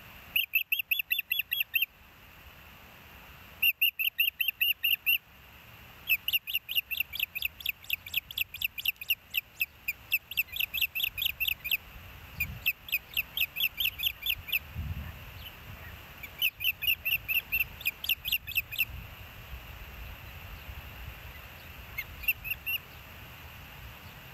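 Ospreys calling at the nest: runs of rapid, high, whistled chirps, about seven a second. They come in several bouts, the longest lasting about six seconds.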